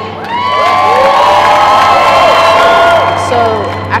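Large crowd of young people cheering and shouting, many voices overlapping. The cheer swells about half a second in and dies away after about three seconds.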